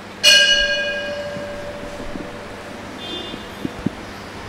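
A bell struck once, ringing out and fading over about two seconds. A fainter ring follows about three seconds in, then two small knocks near the end.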